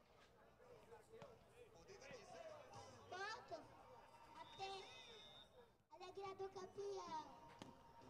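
Faint background voices of spectators, with a few soft knocks.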